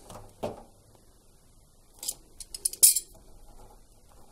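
Metal hose clip and water-pump pliers clinking: a quick run of small sharp clicks about two seconds in, ending in one louder snap as the clip is let go onto the drain hose end.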